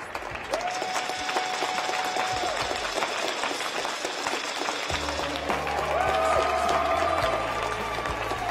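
Audience applauding over music played through the arena's sound system; the music holds long notes, and a bass line comes in about five seconds in.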